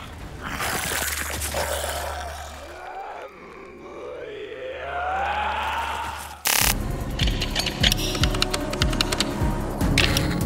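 Film soundtrack mix: a dramatic score over a low drone, with a monster's growl bending up in pitch in the middle. About six and a half seconds in, a burst of static cuts to fast, glitchy electronic music full of clicks.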